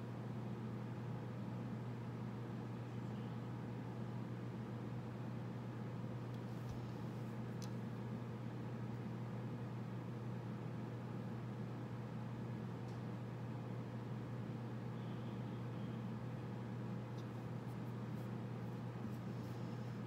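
Steady low hum of room noise, with a few faint ticks and scratches of a needle tool tracing lines in a soft clay tile.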